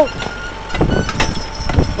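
Farm tractor engine running steadily, with a few faint clicks and knocks.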